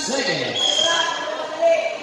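Voices calling out and shouting during a basketball game on a covered court, with a sharper knock about one and a half seconds in.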